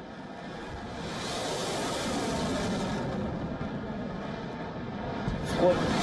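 Ship-launched missile firing from a warship's deck launcher: a broad rushing noise from the rocket motor swells over the first second or two and runs on steadily. A sharp loud crack comes near the end, as a man's voice starts counting down.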